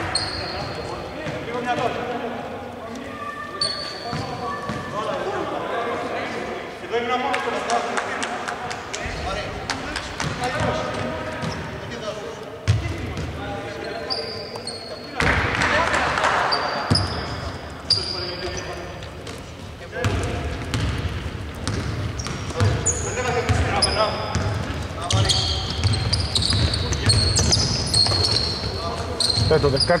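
A basketball is dribbled on a hardwood court and sneakers give short high squeaks, many of them near the end, with players' voices, all echoing in a large, near-empty arena.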